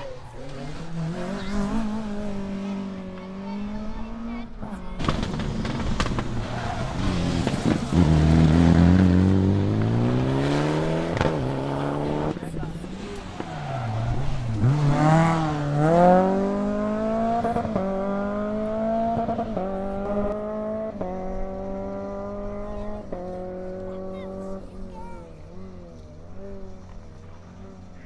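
Rally car engines revving hard as the cars take a tight chicane one after another and accelerate away. The loudest run comes around 8 to 12 seconds in, pitch rising. From about 15 seconds another car climbs through the gears, its engine note rising and dropping back at each upshift, four times.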